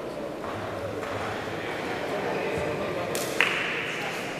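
Indistinct murmur of people talking in a large sports hall. About three seconds in, a sudden short hiss-like noise cuts in and runs briefly to the end.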